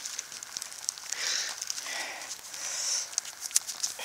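Dry leaves and loose soil crackling and rustling as a gloved hand sifts through them, with many small scattered clicks and a couple of soft swells of rustling.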